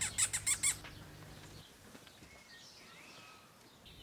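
Short-tailed field vole giving a rapid run of five or six sharp, very high squeaks in the first second. The call is the kind that field voles give when defending their territory, likened to a child's squeaky toy.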